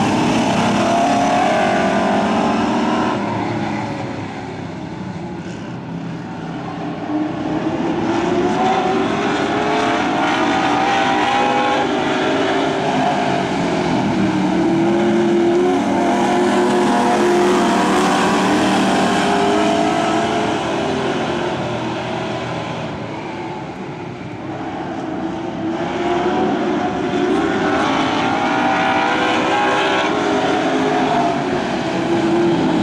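A pack of dirt-track stock cars racing, their engines revving up and down through the turns. The sound swells as the pack passes close and eases twice as the cars run to the far side of the track.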